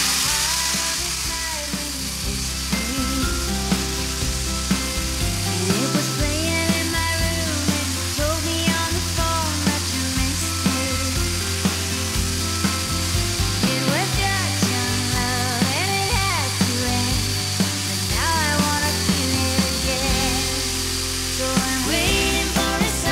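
Electric drywall sander running steadily against a ceiling, a hissing whirr with a steady high whine, as it knocks down the ceiling's texture peaks with 80-grit paper. Background music with a steady beat plays over it.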